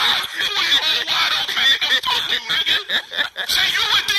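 Several people's voices shouting and talking over one another through a voice-chat connection, too jumbled to make out words.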